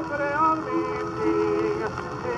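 A 1926 78 rpm shellac record playing a tenor ballad with orchestral accompaniment, melody notes held and moving over steady surface hiss and faint crackle.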